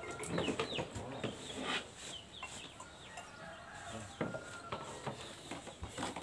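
Chickens clucking, a scatter of short calls.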